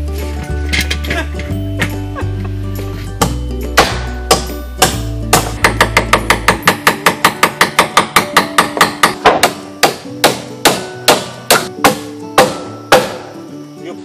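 Hammer driving nails into 2x4 wood framing, a run of sharp strikes about two to three a second that sets in after a few seconds and grows denser about halfway through. Background music plays throughout, its bass dropping out about halfway.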